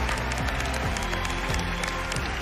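Studio audience and judges clapping over background music, a steady patter of many hands.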